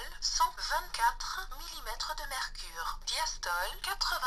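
Synthetic speaking voice of a Beurer BM 49 talking blood-pressure monitor, heard through its small built-in speaker and reading out stored blood-pressure readings as the memory buttons are pressed.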